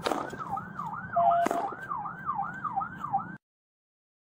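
Police siren in a rapid yelp, its wail rising and falling about three times a second, with a sharp crack about one and a half seconds in. The sound cuts off suddenly shortly before the end.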